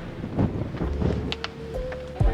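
Wind buffeting the microphone as a low rumble, with background music holding steady notes that come through more clearly in the second half.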